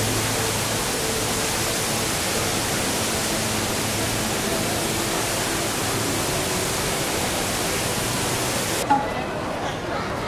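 Steady, full-range hiss of heavy water falling from the HSBC Rain Vortex indoor waterfall, with faint crowd voices underneath. About nine seconds in it cuts off suddenly, leaving quieter crowd chatter.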